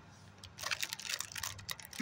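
Plastic snack-cake wrapper crinkling and crackling as it is handled, a dense run of irregular sharp crackles starting about half a second in.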